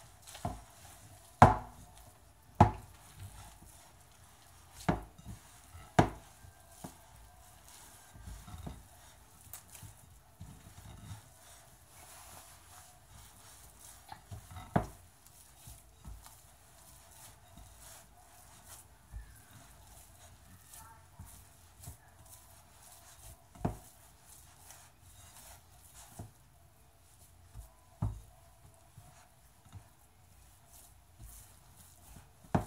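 Pizza dough being kneaded by hand in a glass mixing bowl: soft, low pressing and rustling of the dough, broken by about seven sharp knocks against the bowl at uneven intervals, the loudest in the first three seconds.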